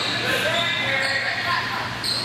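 Sneakers squeaking on an indoor sport-court floor during volleyball play, with players' and spectators' voices echoing in a large gym.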